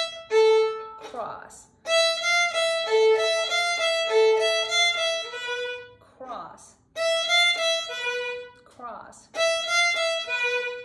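Solo violin, bowed, playing a simple beginner melody in short phrases separated by rests. The notes move between the E and A strings: E, F natural and A, with a few higher notes.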